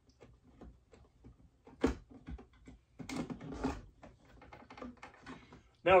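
Plastic SodaStream carbonation bottle being unscrewed and lifted off the carbonating machine: faint plastic clicks and creaks, a sharp click about two seconds in, and a short rasping rush a second later.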